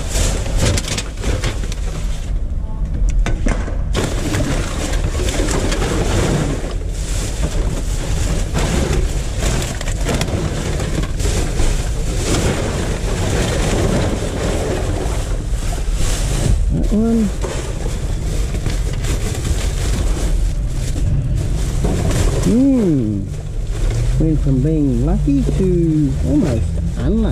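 Plastic rubbish bags and packaging rustling and crinkling, with small knocks, as gloved hands rummage through a full dumpster. Near the end there are a few short wavering tones.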